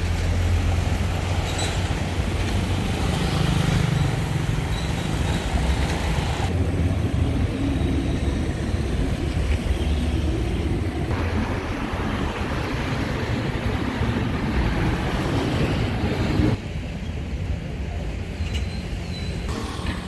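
Road traffic on a town street: cars going by with a steady low rumble. The sound changes abruptly a few times, and the rumble drops away near the end.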